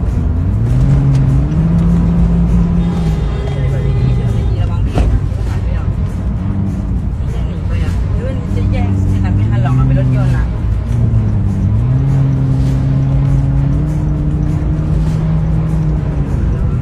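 A car's engine and road noise heard from inside the cabin, the engine note rising smoothly as the car speeds up, holding steady, falling back about four seconds in, then rising again around eight and eleven seconds in.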